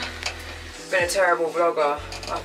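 A woman talking over background music with steady low bass notes; the bass drops out for about a second midway.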